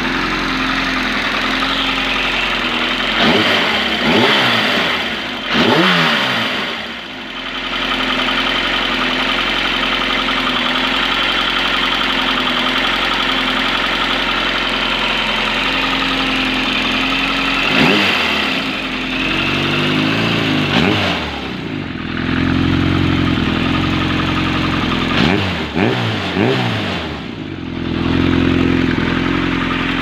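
Yamaha XJR1200's air-cooled inline-four engine idling steadily with its carburettors freshly synchronised, blipped three times, the revs rising and falling each time before settling back to idle.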